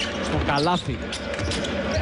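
Basketball game sound on a hardwood court during live play: short sharp knocks of the ball and players' feet over steady arena crowd noise.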